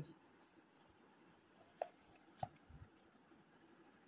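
Faint handling of a book's paper pages and a pen on the paper, with two brief soft taps a little after halfway.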